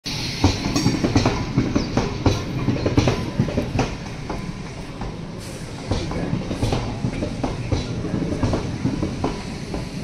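Passenger train passing close by, its wheels clattering over the rail joints in an uneven run of knocks over a steady rumble.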